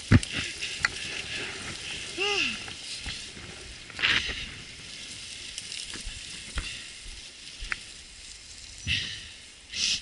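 Mountain bike rolling along a dry, leaf-covered dirt singletrack: tyres crackling over leaves and dirt, with scattered knocks and rattles from the bike over bumps and roots.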